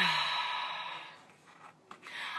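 A woman's drawn-out 'uh' sliding down into a long breathy sigh that fades away over about a second, with a small mouth click just before the end.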